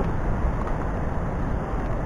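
Steady rumbling noise with no distinct events, heaviest in the low end and flickering unevenly: wind buffeting the handheld camera's microphone.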